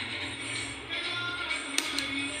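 Background music with a steady beat, and near the end one sharp snap of a nail tip cutter clipping through a plastic artificial nail tip.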